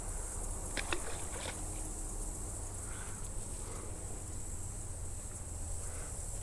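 Steady outdoor background of insects buzzing in the grass over a low rumble, with a few faint clicks about a second in.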